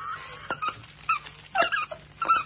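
A long-haired dachshund mouthing a plush frog toy, setting off several short squeaks about half a second apart, after a thin wavering squeak that fades out at the start.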